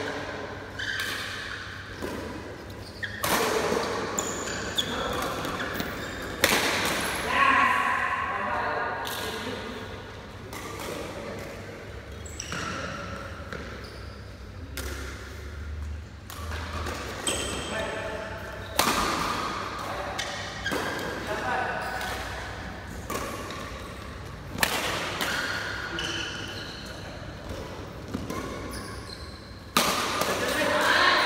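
Badminton rackets striking the shuttlecock again and again in sharp cracks during doubles rallies, with occasional shoe squeaks on the court floor and players' voices between shots, echoing in a large hall.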